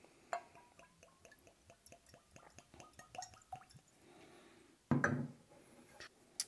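Bourbon poured from a glass bottle into a stemmed tulip nosing glass: a click just after the start, then a quiet run of small glugs and drips for about three seconds. A short, louder sound about five seconds in.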